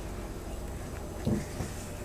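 Wire whisk stirring stiff bread dough in a glass bowl, a soft scraping of the wires through the thickening dough, with one short dull knock about a second in.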